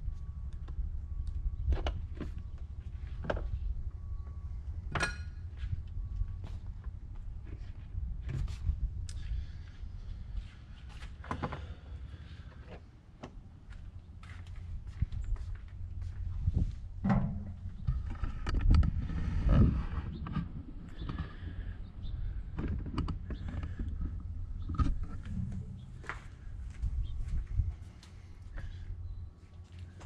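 Scattered knocks, clicks and thunks from a personal watercraft being handled at its controls and safety lanyard, over a steady low rumble, with a busier, louder stretch a little past the middle. No engine is heard running.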